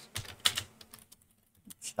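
Computer keyboard typing: a quick run of key clicks over about the first second.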